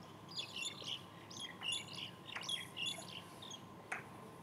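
Small birds chirping in quick, high-pitched bursts, in three clusters. A few faint taps of chalk on the blackboard come in between.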